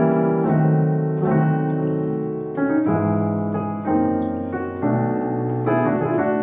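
Digital keyboard playing a piano voice: a gospel diminished walk of sustained chords, a new chord struck about every second, with the bass line moving under them.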